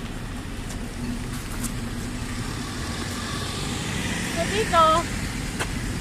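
Road traffic at a city intersection: a steady low engine hum, with a passing vehicle swelling louder over the second half.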